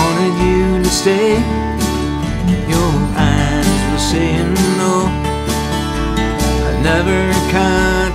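Country song: a twelve-string acoustic guitar strummed over a backing track with bass and a steady beat.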